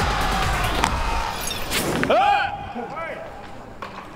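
Edited TV soundtrack: background music, then from about halfway through, men's loud drawn-out shouts from a baseball team.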